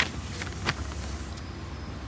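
A low, steady background rumble, with a brief rustle of paper sheets being handled under a second in.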